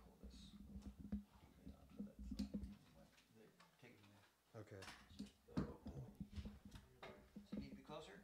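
Faint scattered clicks and knocks of microphone and music gear being handled and set up, under quiet murmured voices.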